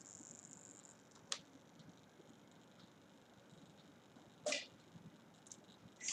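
A hobby servo in a 3D-printed robot finger gives a faint, thin high whine for about a second as it moves in answer to a voice command. A single click follows, and a short breathy noise comes near the end.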